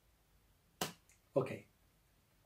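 Deck of tarot cards being handled: a sharp click, then about half a second later a louder, duller short sound.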